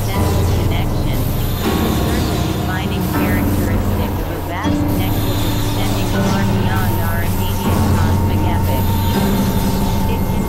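Experimental electronic drone music from synthesizers: layered low sustained drones, with short gliding, warbling chirps higher up.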